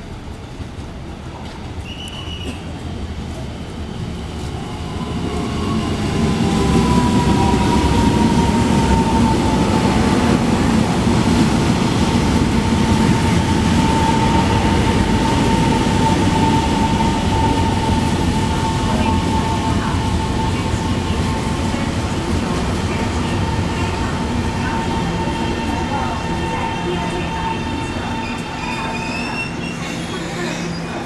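Taiwan Railways EMU700 electric multiple unit pulling into a station and slowing. The rumble of its wheels and running gear builds over the first several seconds as the cars come alongside, then slowly fades. A steady high squeal holds over it while the train brakes.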